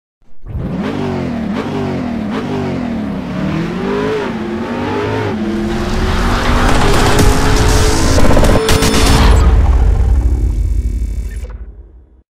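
Car engine revving up and down several times, then held at a steady higher pitch, ending in a loud deep rumble that fades out near the end.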